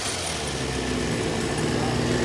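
Maruyama 26cc two-stroke brush cutter engine (34 mm bore) idling steadily, having just dropped from high revs as the throttle is let off.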